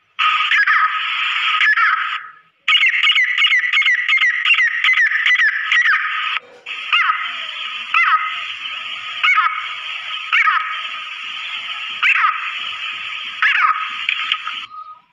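Female grey francolin (teetar) calling. The short notes come in a quick run of about four a second, then single notes about once a second. Under them is a steady hiss and a thin constant tone, and the sound drops out briefly twice.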